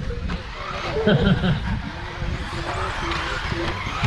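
A man laughs about a second in, over the steady hiss and whine of electric 1/10-scale four-wheel-drive RC buggies running on the dirt track.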